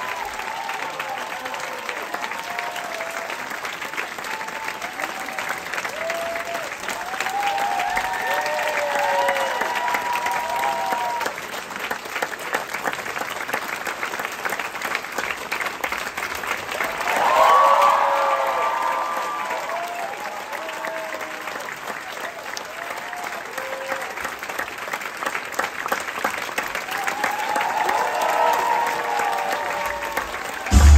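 Theatre audience applauding throughout, with scattered cheering voices over the clapping and a louder swell of cheering about seventeen seconds in.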